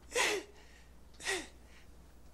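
A man's voice giving two short, breathy sighs, each falling in pitch, one just after the start and the other a second later.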